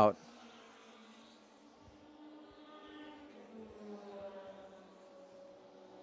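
Faint drone of a lone open-wheel race car's engine, its pitch gliding slowly and its level swelling a little a few seconds in, then easing off.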